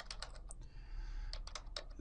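Computer keyboard keystrokes: an irregular run of separate key clicks as a few characters of a name are typed.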